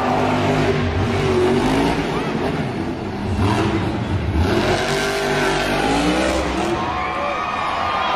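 Monster truck engines revving hard, the low engine note rising and falling.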